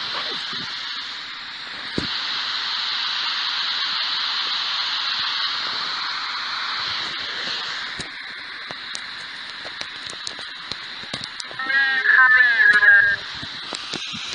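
Ghost radio (spirit box) putting out steady hiss-like radio static with scattered clicks, more of them in the second half. About twelve seconds in comes a short, loud, garbled warbling burst that sounds voice-like.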